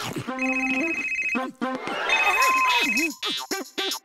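Mobile phone ringing: two rings about a second apart, over cartoon background music.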